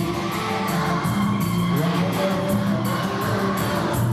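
Children's choir singing over instrumental accompaniment with a steady beat.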